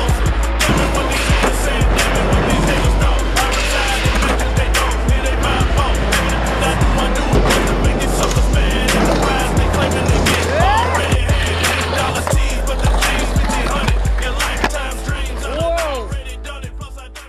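Hip-hop track with a heavy bass beat, with skateboard wheels rolling and the board clacking mixed in under the music.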